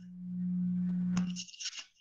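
A steady low hum on a single pitch that swells in, holds for about a second and a half and stops, with a click and a short hiss near its end.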